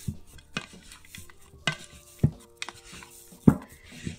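Plastic bench scraper gathering risen bread dough in a mixing bowl: soft scraping with several sharp knocks of the scraper against the bowl, the loudest about three and a half seconds in.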